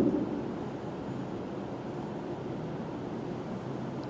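Steady low room noise in a pause between spoken sentences, with the last word's echo fading in the first half second.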